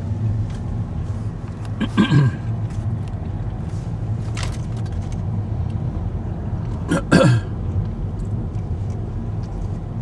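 Steady road and engine noise inside a moving car's cabin, a low even rumble, with two short louder sounds about two and seven seconds in.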